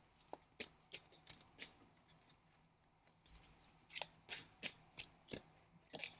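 Faint soft clicks of a tarot deck being shuffled by hand, about three a second, in two short runs with a pause between them.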